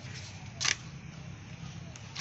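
Key card held to a hotel door's electronic card lock: one short, sharp, high click-like sound about two-thirds of a second in, over a low steady hum.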